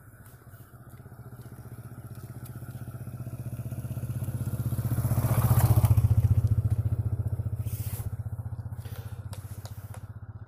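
A motor vehicle engine passing by, a low pulsing drone that grows louder to a peak about halfway through and then fades away.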